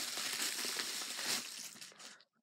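Plastic bubble wrap crinkling and crackling as it is handled and pulled off a small package, dying away near the end.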